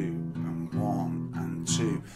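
Steel-string acoustic guitar strummed in a steady blues rhythm, the chord's low notes changing as the third finger goes on and off the fourth fret. The playing stops abruptly at the end.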